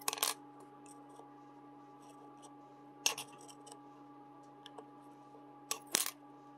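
Hobby knife blade working under 3D-printed plastic tags on a textured printer build plate, with sharp clicks as the parts pop free: one at the start, one about three seconds in, and a quick cluster near the end. A steady faint hum runs underneath.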